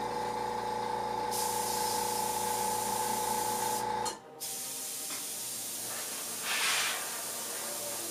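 Gravity-feed airbrush hissing steadily as it sprays paint onto a model part, with a louder spurt of spray about two-thirds of the way through. A steady motor hum runs under the hiss and cuts off abruptly about four seconds in.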